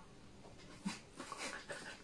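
Faint stifled laughter through the nose and closed mouth: a few short, breathy squeaks starting about a second in.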